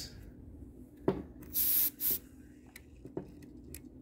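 Canned compressed-air duster blowing two short hissing blasts through its straw onto a circuit board, the first about a second and a half in and a shorter one just after; the can is almost empty. A sharp click comes just before the first blast.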